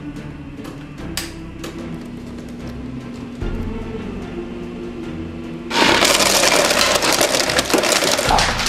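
Soft background music, then about six seconds in a sudden loud crackling clatter as ice pours down the chute of a refrigerator door dispenser.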